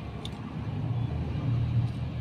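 A steady low engine rumble, growing slightly stronger partway through.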